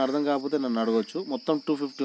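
A man speaking, with a steady high-pitched chirr running under the voice.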